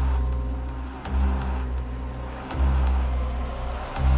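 Dark ambient background music: a deep bass pulse swelling in about every second and a half under sustained drone tones.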